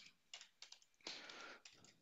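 Faint keystrokes on a computer keyboard: a handful of irregular, light taps as an email address is typed.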